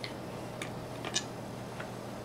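Humanoid robot arm clicking as it moves, about five light, sharp ticks spaced unevenly over two seconds, over a faint steady hum.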